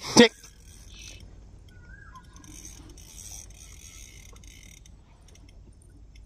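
A sharp knock just after the start, then a spinning fishing reel being wound for a second or two, a soft high whirr with fine ticking, while a catch is played on a bent rod.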